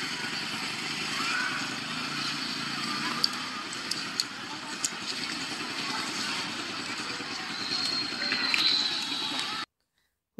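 Busy outdoor street ambience of people's voices and chatter with a vehicle engine behind them, heard as a video played back on a phone. It cuts off suddenly just before the end.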